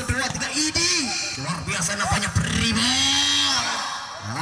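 Voices shouting and calling out without clear words during a volleyball rally, with one long drawn-out call near the end.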